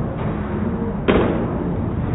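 Bowling alley background noise, a steady low rumble, with one sharp crack about a second in.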